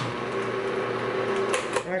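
Cuisinart food processor switched on with a click, its motor and blade running steadily for almost two seconds on dry flour, salt and sugar, then stopping. A quiet-running machine.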